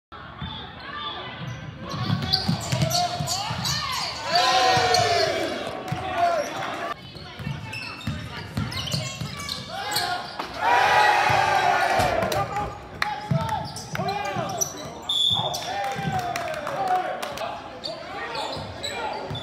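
Indoor basketball game: a ball dribbling with repeated thumps on the hardwood court, under spectators and players shouting and cheering. The shouting swells about four seconds in and again around ten seconds in, as a shot goes up.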